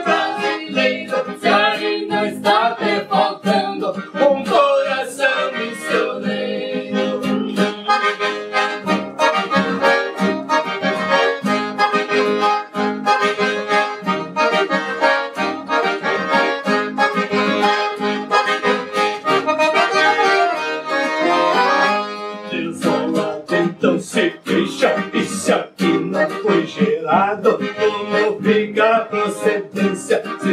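Instrumental break of a gaúcho folk song: a piano accordion plays the melody over a classical guitar. Near the end the sound changes to sharper, strummed chords.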